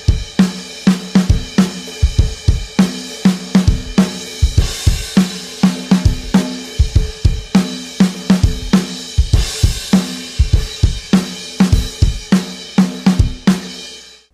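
Acoustic drum kit with Istanbul Agop cymbals playing a steady groove: hi-hat, kick drum, and 16th-note offbeat snare strokes played at normal to accented strength rather than as ghost notes. A cymbal swell rises twice, about five and ten seconds in.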